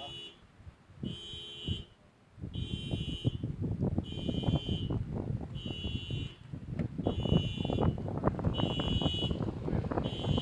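An electronic beeper sounding a short, high beep about once a second, steady and evenly spaced. From about two and a half seconds in, close rustling and scuffing joins it and grows louder as someone handles things right by the microphone.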